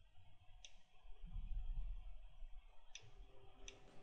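Two sharp computer-mouse clicks about two and a half seconds apart, with a faint low rumble between them.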